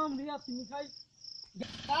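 Insects chirping in a high, evenly pulsed trill under a person's voice. The chirping and voice stop about halfway through, and a rush of noise comes in near the end.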